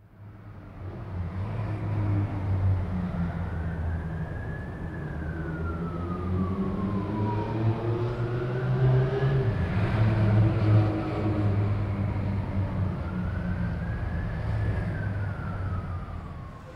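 Street traffic with a low engine rumble, and an emergency vehicle's siren wailing slowly up and down three times over it.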